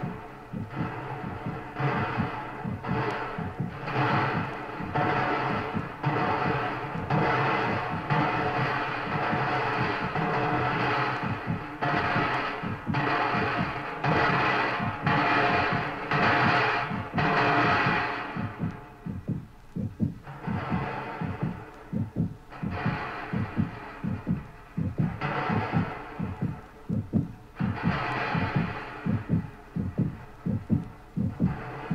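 Late-1960s electronic tape music: fast throbbing low pulses run under loud swells of dense, many-toned sound that surge every second or two. After about two-thirds of the way through, the swells come further apart and the pulses stand out more.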